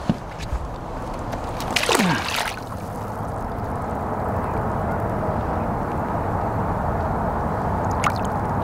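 Lake water sloshing and trickling around a musky held by the tail at the surface beside the boat while it is revived for release. There is a brief louder burst about two seconds in, after which a steady wash of water noise continues.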